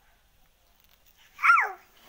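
A single short, high-pitched cry, falling in pitch, about one and a half seconds in.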